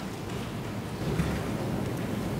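Steady hiss of background noise on the courtroom's microphone sound feed, with no speech.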